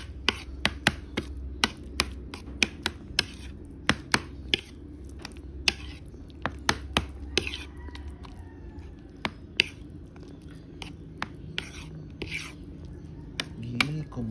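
Metal spoon clinking and scraping against a ceramic plate while stirring thick rice porridge, in quick, irregular clicks several times a second.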